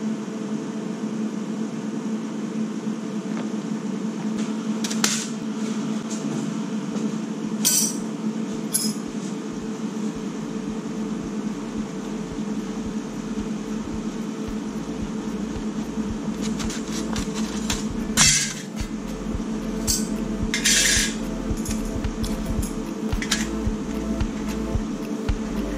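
Thin plasma-cut sheet-steel panels clinking and knocking as they are handled and set down on a steel welding table, a handful of separate clinks with a louder knock past the middle and a short rattle after it, over a steady hum.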